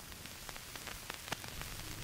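Surface noise of a phonograph record playing on after the song has ended: a steady hiss with scattered clicks and crackles that come more often in the second half, over a low hum.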